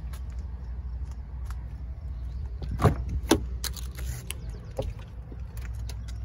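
Two sharp clicks about three seconds in, half a second apart, typical of a pickup truck's rear door latch and handle being worked as the door is opened, over a steady low rumble.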